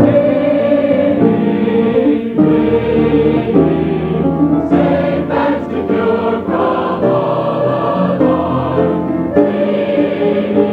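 Youth choir singing a hymn, sustained sung chords moving from note to note. It is a dull, low-fidelity old recording with no bright top end.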